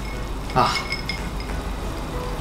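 A drinking glass clinks as it is picked up off the counter, with a brief ringing about half a second in, and a short "ah" from the voice.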